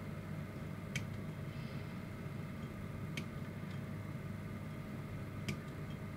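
Three short, sharp clicks, about two seconds apart: hobby side cutters snipping small plastic parts off a model-kit sprue, over a low steady room hum.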